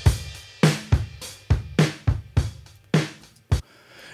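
Recorded drum kit groove, with kick, snare and hi-hat, played back through the iZotope Vinyl plugin on its 1980 setting with the wear turned up. The beat stops about three and a half seconds in.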